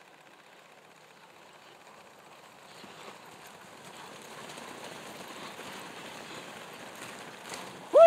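Dog sled team running on a packed snow trail: a steady rushing hiss from the sled runners and the dogs on snow, growing louder as the team comes close and passes, with a brief swell near the end.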